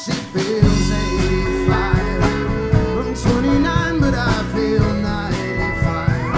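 A folk band playing live: banjo, acoustic guitar, fiddle, electric bass and drum kit in a steady beat. The bass and drums drop out briefly and come back in about half a second in.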